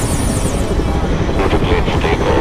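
HAL Prachand light combat helicopter's rotor and turboshaft engines running, a loud, steady rumble. A high warbling tone runs over it and stops under a second in.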